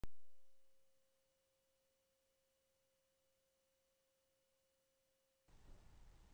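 A brief pure tone at the very start that fades out within about half a second, then near silence with a very faint steady tone that stops shortly before the end.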